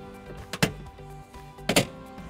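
Two sharp clicks about a second apart as plastic trim push pins are pried out of the rear threshold panel with a flathead screwdriver, over steady background music.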